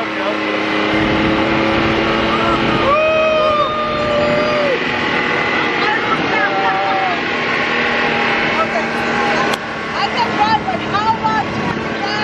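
Engine of a Can-Am side-by-side (dune buggy) running steadily as it drives, heard from the open cab. Excited voices and exclamations ride over it, around three seconds in and again near the end.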